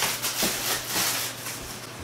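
Rustling and light handling knocks as household items are picked up and moved about.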